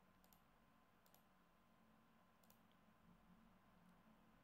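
Near silence: room tone with a few faint, sharp clicks.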